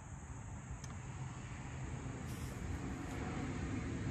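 Low, steady background rumble of room noise with a faint click about a second in.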